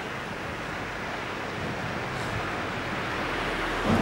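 Surf washing on the shore, a steady rushing noise that slowly swells.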